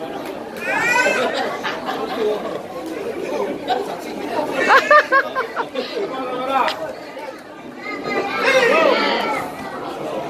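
Overlapping chatter of spectators in a large echoing hall, with higher-pitched voices calling out now and then, loudest about halfway through.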